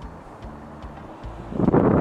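Wind rumbling on the microphone as a steady low noise. Near the end a man's voice starts.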